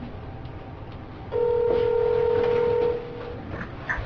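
A flip phone's electronic beep: one steady tone held for about a second and a half, starting about a second in, over faint room noise.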